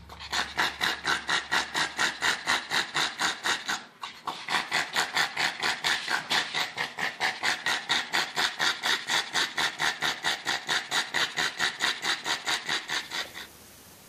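A pug panting hard with its mouth open and tongue out: a loud, raspy, rhythmic breathing at about four to five pulses a second, with a brief break about four seconds in. It stops shortly before the end.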